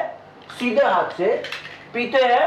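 Light clicks and clinks of a small drink container being handled and raised to drink, with a voice heard briefly.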